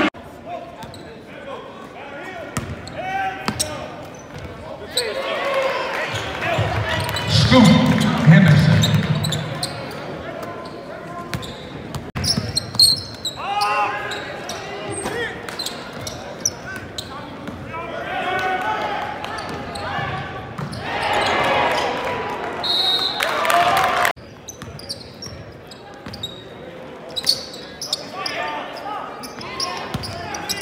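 Live game sound in a basketball gym: players and spectators calling out and shouting, with a basketball bouncing on the hardwood court now and then, all echoing in the large hall.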